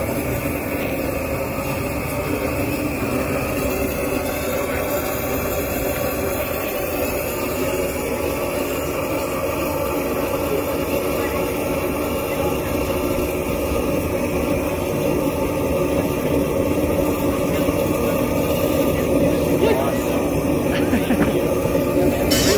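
A loud, steady machine drone, like a running motor, holds through the whole stretch, with indistinct voices underneath.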